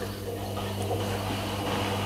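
Miele W5748 washing machine draining its last rinse water before the final spin, its drain pump giving a steady low hum.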